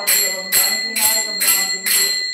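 Puja hand bell ringing continuously over a steady beat of sharp strokes, about two a second, as an aarti is performed before the altar.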